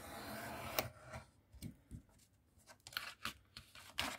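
Craft knife drawn along a steel ruler through a stack of thick grey board: one long scraping stroke for about the first second, then a few short scratches and light ticks. The cut is not getting through, and the blade is thought to be a bit blunt, so several passes are needed.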